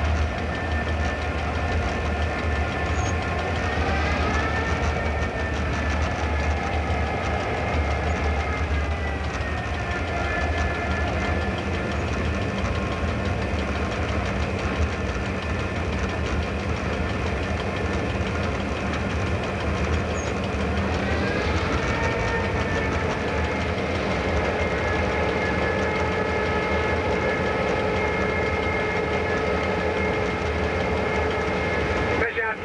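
Diesel-electric locomotive X31 running, heard from inside its cab: a steady low engine drone with a higher whine whose pitch rises about four seconds in, falls back about ten seconds in, and rises again about twenty-one seconds in.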